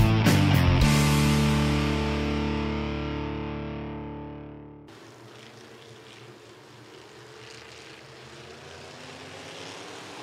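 A distorted electric-guitar chord from intro music rings out and fades over about four seconds, then cuts off. After it comes the faint, steady hum of a field of IMCA Sport Mod race cars' engines as they roll in formation before the start.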